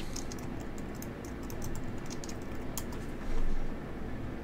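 Typing on a computer keyboard: irregular key clicks as a search term is entered, with a louder, duller knock a little after three seconds in.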